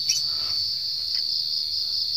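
A steady, high-pitched chorus of insects chirping, with a light click near the start.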